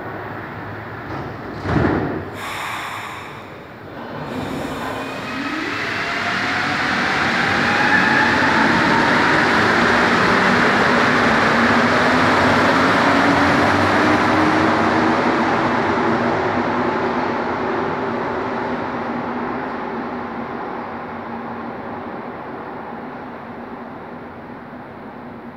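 Rubber-tyred Montreal metro Azur train: the doors close with a sharp thud, then the train pulls out, its traction motors whining upward in pitch as it accelerates. The running noise is loudest as the cars pass and fades slowly as the train leaves.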